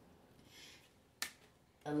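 One sharp click a little over a second in, in a quiet room, followed by a woman's voice starting near the end.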